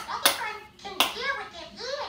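A child's high-pitched voice with two sharp clicks, about a quarter second and one second in.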